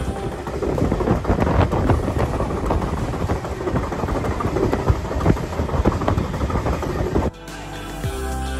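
Alaska Railroad passenger train running on the rails, heard from the open rear observation deck: an uneven rush of rail noise with wind gusting on the microphone. It cuts off suddenly near the end.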